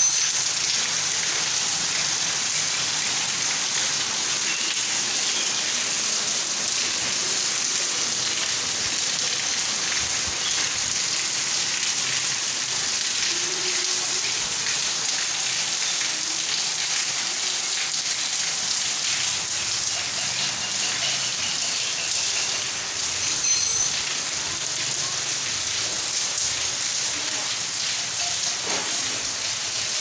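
Heavy rain falling steadily: an even hiss with a dense patter of drops.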